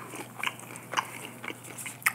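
Close-miked chewing of a mouthful of Chinese takeout food, with short wet mouth clicks about every half second.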